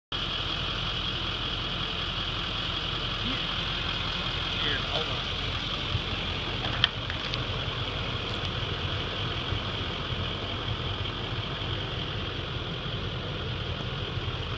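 Chevrolet pickup truck engine idling steadily, with a constant high-pitched drone over it and a single sharp click about seven seconds in.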